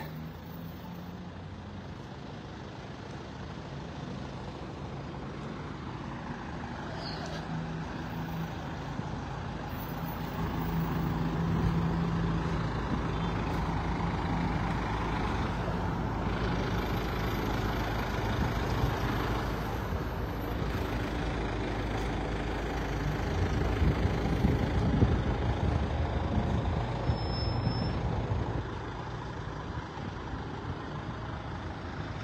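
Slow street traffic passing close by: a dump truck's engine running, growing louder about ten seconds in and staying up for several seconds, with a heavier low rumble a little later and a brief high-pitched tone near the end.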